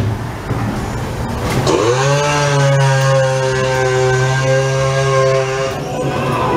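Ghost-train scare effect: a loud motor-like buzz that swoops up in pitch about two seconds in, holds steady for about four seconds and cuts off just before the end, over the rumble of the ride car.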